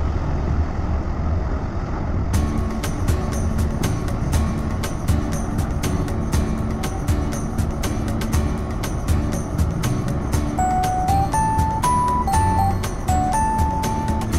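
Music with a steady ticking beat, joined about ten seconds in by a stepping melody line, over a steady low rumble.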